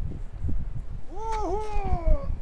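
A person's long drawn-out yell as a rope jumper leaps off a high tower, starting about a second in, with a brief dip in the middle and then slowly falling in pitch. Wind rumbles on the microphone throughout.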